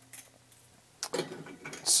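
Chrome-wire stacking cooling racks clinking and rattling as one is set down on another, a few light metallic clicks.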